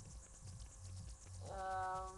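A young woman's voice giving one steady, held hum in the last half-second, a hesitation sound while she thinks of an answer. Before it there is only a low rumble on the laptop microphone.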